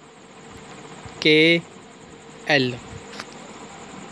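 A man's voice calling out two single letters, one about a second in and one about two and a half seconds in, over a steady background hiss with a faint hum.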